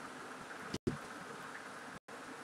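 Faint steady background hiss of room tone and microphone noise, broken by a brief dropout to dead silence a little before the middle.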